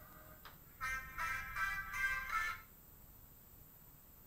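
Music coming through a Zoom call's audio: a short, bright run of notes in several quick pulses begins about a second in and cuts off suddenly after under two seconds, leaving only faint hiss.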